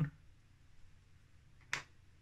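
Quiet room tone with a single brief, sharp sound near the end, about a tenth of a second long.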